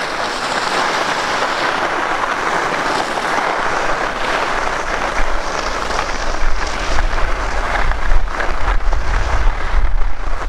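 Skis scraping and hissing over packed snow during quick short turns on a groomed piste, with wind buffeting the microphone from about four seconds in.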